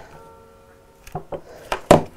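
A hot glue gun being put down on a wooden tabletop: a few light clicks, then a sharp knock near the end. A faint held tone sounds through the first second.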